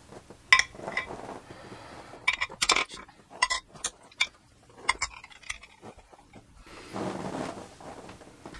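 Makeup brushes being set down one after another on a glazed ceramic plate, their handles and metal ferrules clinking against it in a series of short, sharp clinks.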